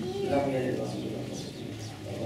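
An indistinct human voice: one drawn-out, wavering vocal sound in the first second and a half, over a steady low background hum.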